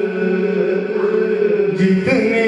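Male voice singing an Urdu naat, a devotional poem in praise of the Prophet, unaccompanied, drawing out long held notes.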